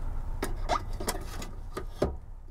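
A few light clicks and scrapes of a hand tool on the screws and metal hinge of a glove box door, spaced irregularly over a low, steady background hum.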